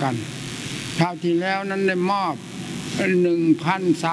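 A man speaking in Thai, in phrases with short pauses, over a steady hiss.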